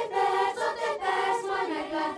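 Children's choir singing together in unison, moving through a run of held notes that change pitch about every half second.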